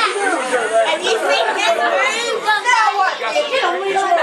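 Several people talking over one another: overlapping voices of an audience and performers, no single clear speaker.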